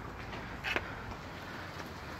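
Low, steady outdoor background noise, with one brief click a little under a second in.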